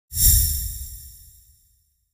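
Intro logo sting: one sudden hit with a deep boom and a bright high shimmer, fading out over about a second and a half.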